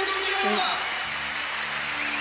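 Audience applauding in a large hall: dense, steady clapping.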